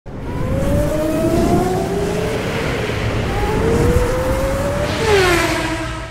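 Racing car engine sound effect: the engine note climbs in pitch twice as it accelerates, then drops sharply as the car whooshes past about five seconds in, settling into a steady held note.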